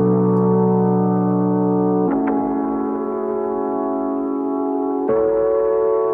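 A melodic keyboard loop slowed right down by time-stretching in Ableton Live's Complex Pro warp mode: long held chords that change twice, smooth and without stutter.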